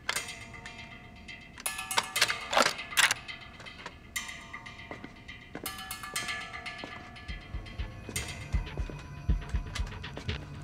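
Tense drama underscore of sustained tones, with a cluster of sharp metallic mechanism clicks and rattles about two seconds in and low thuds in the last few seconds.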